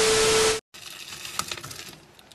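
TV static transition effect: a burst of loud hiss with a steady beep tone through it, cutting off suddenly about half a second in. After it comes a faint hissy background with a few small clicks.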